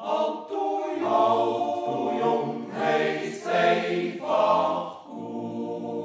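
Male yodel choir singing unaccompanied in close harmony, holding sustained chords that change about once a second. The choir comes in together after a short breath pause and sings a little softer near the end.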